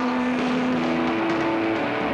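Live hard-rock band with a heavily distorted electric guitar holding a sustained note that steps up in pitch about a second in, then breaks into shorter notes over the band.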